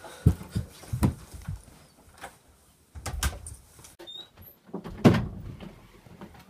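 Door and footstep noises as people come in through a front door and walk into a room: a series of separate thumps and knocks, the loudest about five seconds in.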